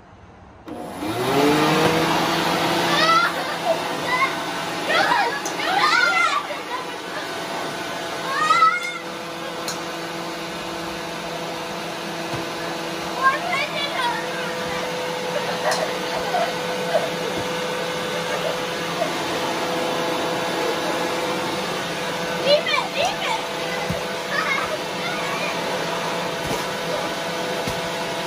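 Corded electric leaf blower switched on about a second in, its motor whining up to speed and then running steadily, blowing straight up. Children's excited voices rise over it several times.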